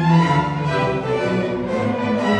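A chamber string orchestra playing: violins, cellos and double basses bowing sustained notes together, with a strong low bass line.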